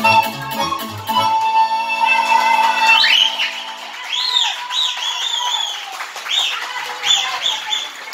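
Romanian sârba dance music, pan flute (nai) with band accompaniment. It ends on a long held note about half way through. Then comes a run of short, high calls rising and falling in pitch, about two a second.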